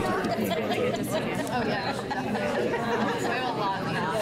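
Many people talking at once in small groups around tables, a steady hubbub of overlapping conversation in which no single voice stands out.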